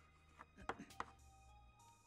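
Chalk tapping and scratching on a blackboard as a word is written: a few short, quiet taps in the first second or so.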